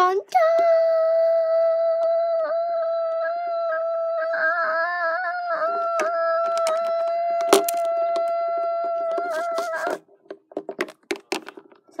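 A child's voice holding one long sung note, the drawn-out middle of a dramatic "dun, dun, dun" sting, steady in pitch with a brief waver about halfway through. It breaks off about ten seconds in, followed by a short final "dun!" and a few small clicks and knocks.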